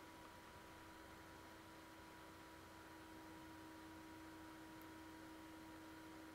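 Near silence: room tone with a faint steady hum of two pitches, one low and one higher, under a light hiss.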